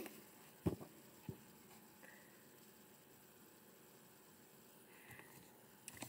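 Near silence with room tone and a couple of faint, short clicks within the first second and a half, as the pages of a paperback book are handled and leafed through.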